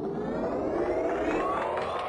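Synthetic rising whoosh sound effect, a riser that climbs steadily in pitch under a programme's closing logo, signalling the end of the programme.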